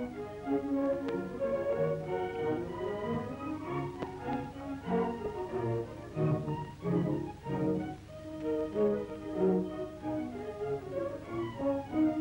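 Background instrumental music of held notes laid over the archival film.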